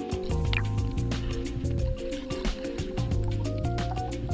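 Background music with a steady beat under held notes and a bass line.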